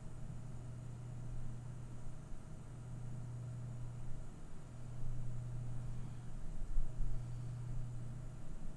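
Steady low hum over a light hiss, the background noise of a recording microphone with no other activity.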